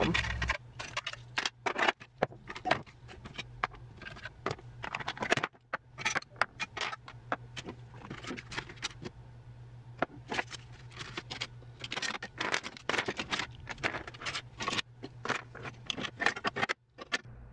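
Makeup products and plastic containers being pulled out of drawers and set down on a desk: rapid, irregular clatter, knocks and scraping.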